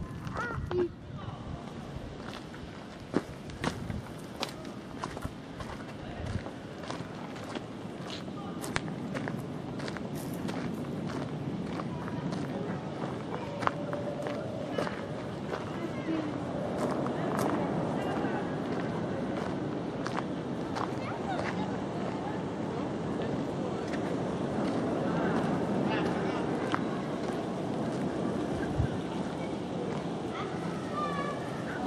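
Footsteps on a dirt and gravel path, with many scattered clicks, over indistinct chatter from other people that grows louder in the second half.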